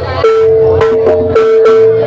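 Live jaranan gamelan music: a metallic gong-chime tone rings and is struck again about a second in, over repeated drum strokes.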